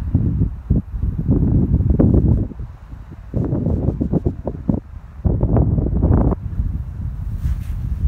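Wind buffeting the microphone in three strong gusts with short lulls between them, easing to a lower, steadier rumble near the end.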